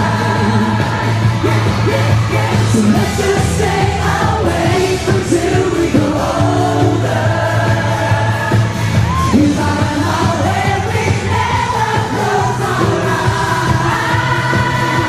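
Male lead vocalist singing a pop song live into a handheld microphone, backed by a band with a steady bass line.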